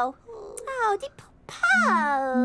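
Teletubby character voices moaning in wordless, falling 'oh' sounds: a short one about half a second in and a longer one near the end.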